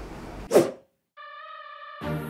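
A loud whoosh sweeping down in pitch about half a second in, then a moment of dead silence, then a steady held electronic tone that leads into background music. This is an edited transition sound effect at a cut.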